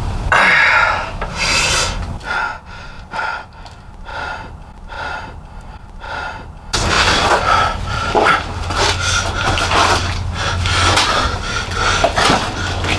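A person breathing hard while crawling, with scraping and rubbing against a gritty floor and clutter. In the quieter middle stretch the breaths come evenly, about one every second; the scraping grows busier and louder in the second half.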